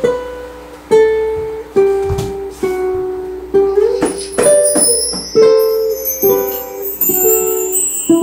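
Ukulele playing a slow intro of single plucked notes, about one a second, each left to ring out. A high shimmering sound joins about halfway.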